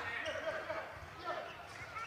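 Faint live sound of a floorball game in an indoor hall: players' voices calling out, with a few light taps of sticks and ball on the floor.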